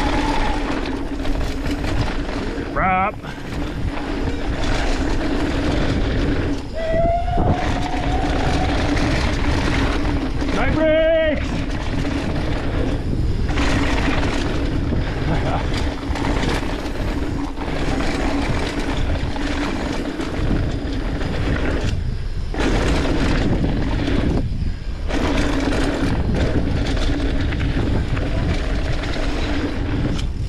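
Mountain bike descending a dirt trail at speed: loud, steady wind rush over the handlebar-mounted microphone with tyre noise on packed dirt. A few short pitched squeals rise and fall over it.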